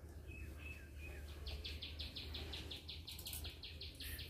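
Faint, rapid chirping from a small animal: an even run of high-pitched pulses, about eight a second, starting about a second and a half in and still going at the end, over a steady low rumble.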